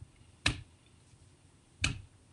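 Two short taps from hand movements, about a second and a half apart, the second as the hands come together.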